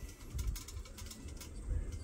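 Male eclectus parrot making low sounds right at the microphone, with a run of short clicks in the first second.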